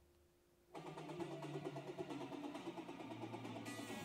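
Near silence, then recorded music starts playing through hi-fi loudspeakers a little under a second in, with a room-correction convolution filter applied.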